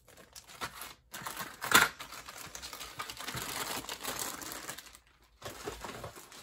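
Thin clear plastic bags holding model-kit sprues crinkling and rustling as they are handled, with the loudest crackle a little under two seconds in and a brief pause around five seconds in.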